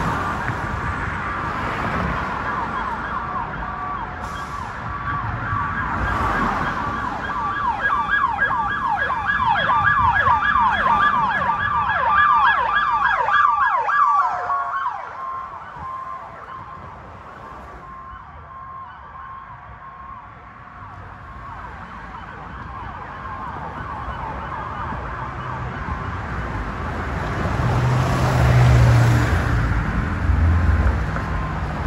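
Emergency siren on a Dodge Durango EMS response vehicle passing by. It sounds a slow wail, switches to a fast yelp of about two sweeps a second some eight seconds in, then drops away sharply about halfway through and lingers faintly as the vehicle moves off. Road traffic noise follows, with a heavy engine rumbling near the end.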